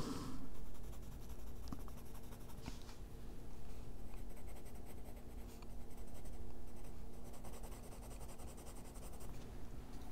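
Faber-Castell Polychromos coloured pencil shading on paper: continuous scratching of many short, repeated strokes.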